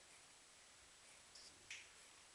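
Near silence: faint room tone, broken by two short, sharp clicks about a second and a half in, a third of a second apart, the second one louder.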